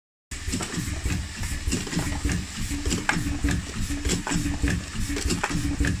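Factory machinery running with a steady low rumble and frequent irregular clicks and clatter, and a short low hum that comes and goes.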